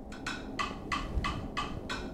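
Metronome click track at 184 BPM in 5/8: short, even wood-block-like ticks, about six a second.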